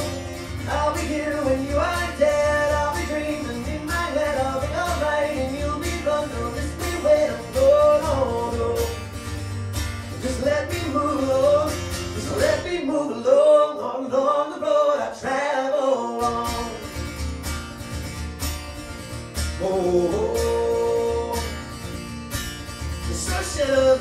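A man singing with a strummed acoustic guitar. About halfway through the guitar drops out for some three seconds while the voice carries on alone, then the strumming comes back.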